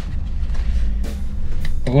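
Steady low rumble of a diesel race car idling, heard inside a bare, unsoundproofed cabin, with a couple of faint clicks as the racing harness is fastened.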